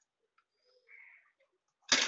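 A faint scrape of handled miniature stainless-steel utensils, then one sharp clink of a small steel plate against metal near the end.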